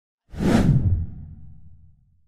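Whoosh sound effect of an animated intro title, with a deep low rumble beneath it. It comes in suddenly about a quarter second in and fades away over about a second and a half.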